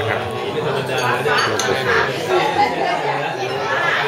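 Several people talking over one another at a dinner table, with occasional clinks of a porcelain soup ladle against china bowls.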